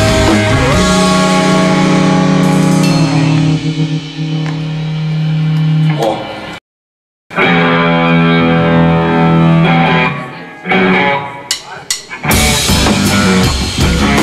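A punk rock trio of electric guitar, bass guitar and drum kit playing live. Held, ringing chords and notes are cut by a sudden half-second dropout about six and a half seconds in, then come back with scattered drum hits. The full band comes in loud about twelve seconds in, at the start of the next song.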